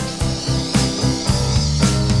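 Background music: guitar over a steady beat.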